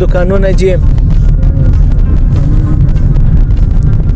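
Steady low rumble of a car driving, heard from inside the cabin: engine and road noise. A voice is heard briefly at the very start.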